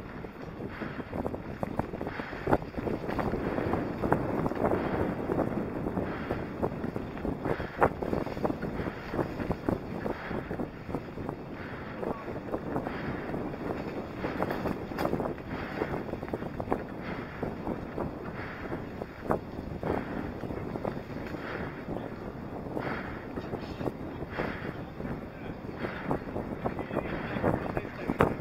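Mountain bike riding over a rough dirt track, heard through a helmet camera: tyres on gravel and dirt, frequent knocks and rattles from the bike over bumps, with wind buffeting the microphone.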